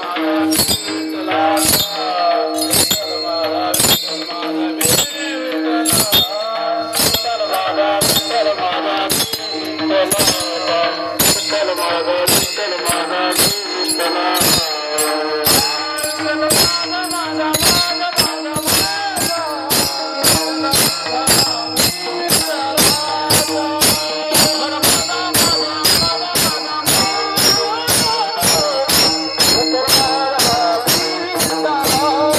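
Many small brass hand cymbals (taal) clashed together in a steady rhythm that gets faster, reaching about two to three strikes a second, under group singing of a devotional bhajan over a steady drone note.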